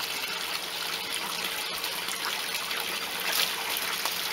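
Koi pond water trickling and splashing steadily as a fish net is worked through it, a little louder about three and a half seconds in as the net comes up out of the water.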